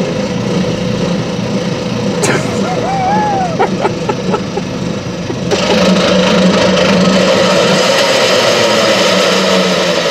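Pickup truck's engine idling steadily. About halfway through, the sound turns suddenly louder, with much more hiss.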